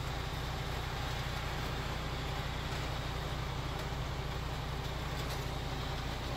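Car carrier truck's engine running steadily to drive the hydraulics while a loading deck is raised on its hydraulic cylinders: an even, low hum.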